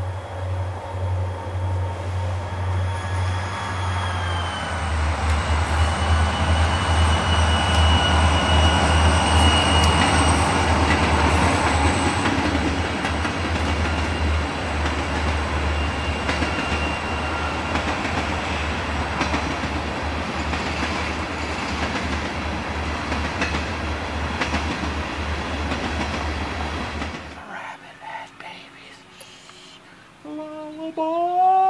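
A train passing: a held chord of tones dips slightly in pitch about four seconds in, then a steady rumble with a clickety-clack beat and thin high wheel squeals. The sound cuts off suddenly near the end.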